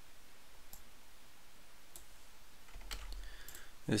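A few faint, scattered computer mouse clicks over quiet room noise.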